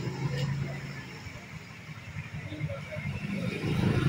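Motorcycle engine running at idle close by, getting louder near the end, with muffled voices around it.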